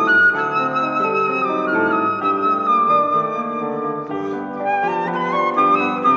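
Concert flute playing a flowing melody over a sustained chordal accompaniment, recorded live in a cathedral. The flute line drifts down, then climbs again near the end.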